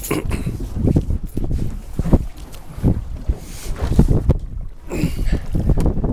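Wind buffeting the microphone on a small sailboat under way, over water splashing along the hull, in irregular gusts, with a few knocks as the sailor moves his weight aft on the deck.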